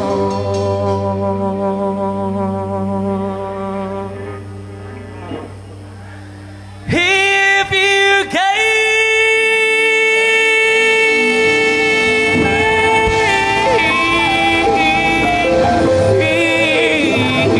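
A live band of electric and acoustic guitars, drums and keyboard playing. A held chord rings and dies away over the first several seconds, then about seven seconds in the band comes back in loud with long sustained notes that bend in pitch near the end.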